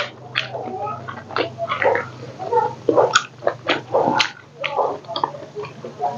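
Close-miked chewing and lip-smacking of a person eating pork and rice by hand: irregular wet smacks and clicks from the mouth, over a low steady hum.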